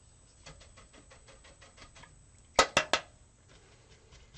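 Painting tools being handled on a hard work table: a few faint taps and scratches, then three sharp clicks in quick succession about two and a half seconds in.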